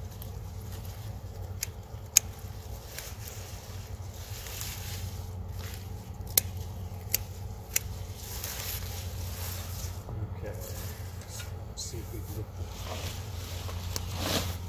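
Sweet potato vines and leaves rustling as they are handled and pulled apart, with several sharp snaps or clicks scattered through it. A steady low hum runs underneath.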